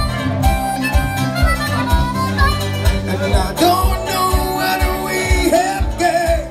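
Live roots band playing: an amplified harmonica leads with bending notes over electric guitar, bass and drums, with a steady kick-drum beat of about two a second.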